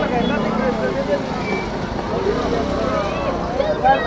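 Background chatter of several people talking at once, with a steady low rumble underneath.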